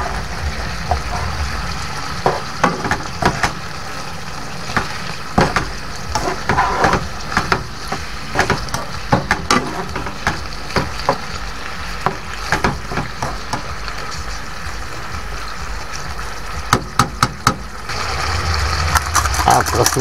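Swordfish chunks sizzling in oil in a non-stick frying pan, with metal tongs clicking against the pan many times as the pieces are turned. A louder low rumble comes in near the end.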